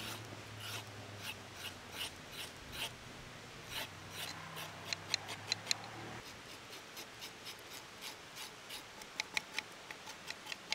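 The sharp spine of a Swiss Army knife's wood saw blade scraping the skin off a raw carrot, in short quick strokes of about two or three a second. The strokes turn crisper and clickier about halfway through and again near the end.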